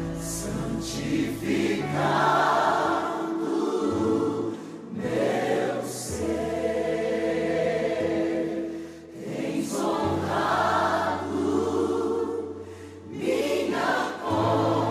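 Choir singing a Christian song in long held phrases over sustained low accompaniment notes, with short breaks between phrases.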